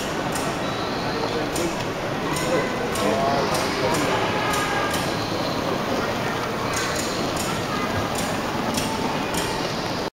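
Steady crowd chatter in a large exhibition hall, with short hissing puffs at uneven intervals from a vertical-boiler live-steam model locomotive running on its track.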